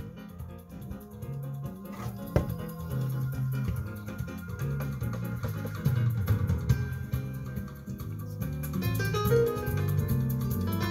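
Recorded music from a CD player, bass-heavy, playing through speakers fed by an MTX RT-X02A two-way electronic crossover.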